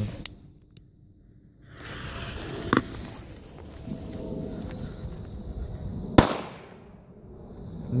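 A cylindrical firecracker goes off with a single sharp bang about six seconds in, after a few seconds of steady hissing noise while its fuse burns.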